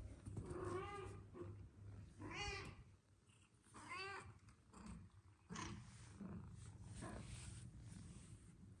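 Kitten meowing three times, short calls rising and falling in pitch about a second and a half apart, followed by soft scuffling as the kittens tussle.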